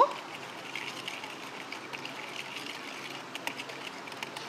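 Hand whisk stirring curd and brown sugar in a mixing bowl, a soft steady scraping with scattered faint ticks as the sugar is worked in to dissolve.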